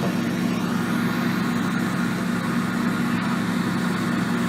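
Engine of a ride-on Bomag tandem asphalt roller running with a steady, even hum.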